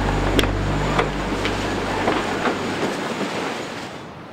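Title-sequence sound design: a held low drone that stops about a second in, under a rushing noise with light clicks about twice a second, fading out toward the end.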